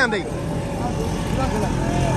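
Road traffic running steadily, with a motor vehicle's low engine note coming in about a second and a half in, under people talking.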